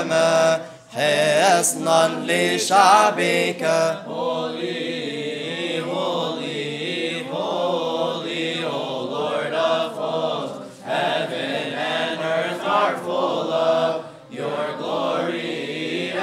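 Coptic Orthodox liturgical hymn chanted by a group of deacons, a slow melodic line drawn out on long, held notes.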